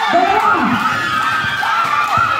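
Spectators' crowd shouting and cheering, many voices overlapping.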